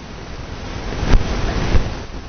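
A rush of noise on the microphone that swells about a second in, with two low bumps, typical of the microphone being handled or blown on.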